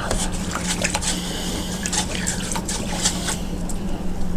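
A paintbrush being swished and rinsed in a container of liquid to clean off acrylic paint, with irregular small splashes and clicks over a steady low hum.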